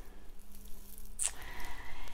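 A person sniffing a bubble bar: one short sniff a little over a second in, after a faint low hum that stops with it.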